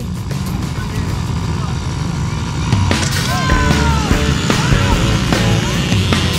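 A pack of small youth dirt bikes running at the starting gate, then accelerating away together, getting louder about halfway through as the gate drops.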